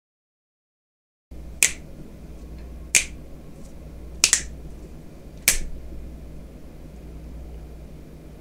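A low, steady hum cuts in about a second in. Four sharp clicks or snaps follow, each roughly a second and a half apart, and the third is a quick double.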